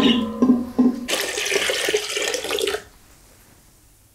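Water poured from a smaller aluminium pot into a large aluminium stockpot of dark alder-cone dye, splashing into the liquid as the dye bath is topped up; the pour stops about three seconds in.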